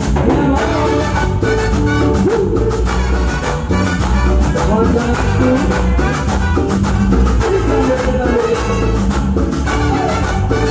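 A live tropical dance band plays Latin dance music with a steady beat.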